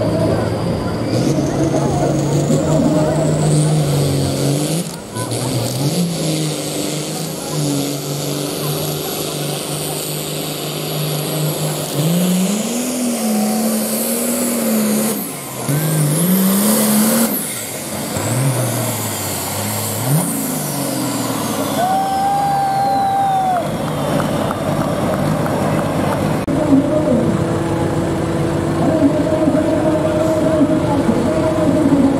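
Diesel pulling tractor under full load dragging a weight-transfer sled, its engine pitch climbing and sagging several times as the revs rise and fall. A high whistle sweeps up and down above the engine.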